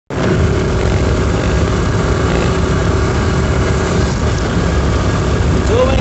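A moving vehicle heard from on board: its engine runs steadily under continuous road and wind noise. A man's voice starts just before the end.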